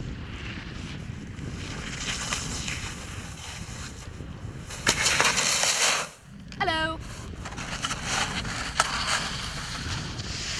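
Wind buffeting the microphone over the hiss of skis on snow. About five seconds in there is a louder burst of scraping lasting about a second as the skier falls and slides on the snow. Soon after comes a brief cry rising in pitch.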